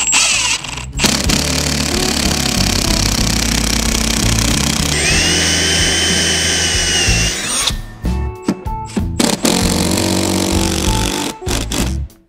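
Cordless drill boring and countersinking holes in high-density polyethylene (HDPE) board, running in long steady runs with short stop-start bursts near the end, over background music.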